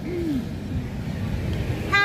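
Low, steady rumble of a van's engine and road noise heard inside the passenger cabin, with one brief falling tone near the start.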